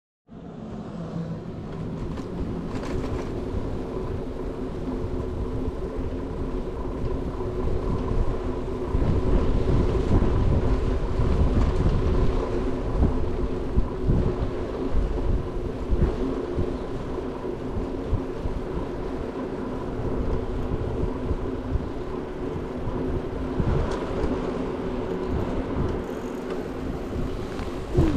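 Wind rumbling on the microphone of a handlebar-mounted action camera while riding a bicycle, mixed with rolling road noise and a faint steady hum. The rumble grows louder through the middle, as the bike picks up speed.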